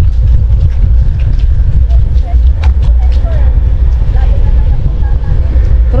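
Wind rumbling on the microphone of a camera riding on a moving bicycle: a loud, steady low rumble, with a couple of faint clicks.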